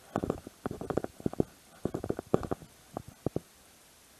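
Handling noise from a body-worn action camera: irregular dull knocks and rubbing as its housing bumps against clothing and a bag, in quick clusters that stop a little before the end.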